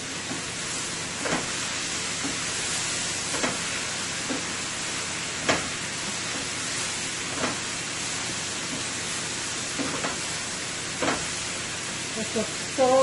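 Sliced peppers, carrots and onion sizzling steadily in a stainless steel sauté pan while being stir-fried, with a short knock or scrape of the wooden spoon against the pan every second or two.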